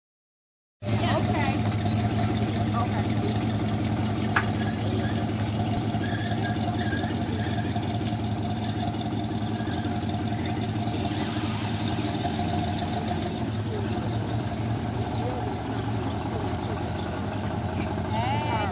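Buick Electra 225's V8 engine running at a low, steady idle as the car rolls slowly, starting about a second in. A single sharp click about four seconds in.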